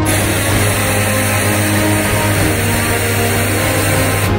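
Aerosol spray can hissing in one long continuous blast, starting suddenly, with background music underneath.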